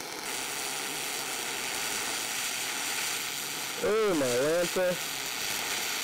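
MIG welding arc on aluminum at 22.5 V with 1/16-inch wire: a steady, crunchy crackle that cuts off at the end. The short-circuit sound means the contact tip is held too close to the work, about 3/8 inch instead of 3/4 inch, so it is not a clean spray transfer. A brief voice sounds about four seconds in.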